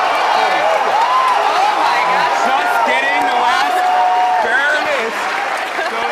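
Crowd in a large room clapping, with many voices talking and calling out over the applause.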